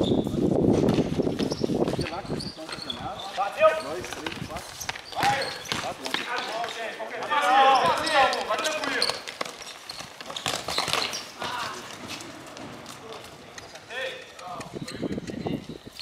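Futsal ball being kicked and bouncing on a hard concrete court, several sharp knocks with the sharpest a few seconds in, while players shout to each other, one longer call around the middle.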